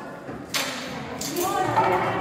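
Indistinct voices of people talking in a large, echoing hall, with two brief sharp noises, one about half a second in and one about a second later.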